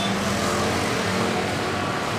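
Street traffic passing: motorcycle and car engines running by with a steady hum.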